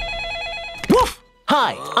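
Cartoon telephone ringing with a rapid trilling tone for most of the first second, stopping as the receiver is picked up.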